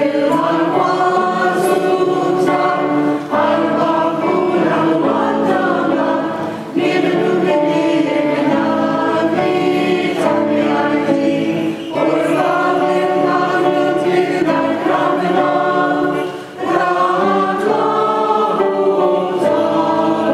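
Choir singing a church hymn in phrases several seconds long, with short breaks between them.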